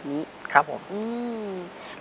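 Speech only: a man finishing a short phrase in Thai, ending on one long drawn-out syllable.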